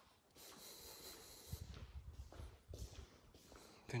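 Faint rubbing and handling noise from a handheld camera being carried through a room, with soft irregular low thumps from about one and a half seconds in, as of footsteps on a tiled floor.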